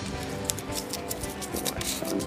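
A small folded paper slip being unfolded between fingers: a run of quick, sharp crackles of crinkling paper, over faint background music.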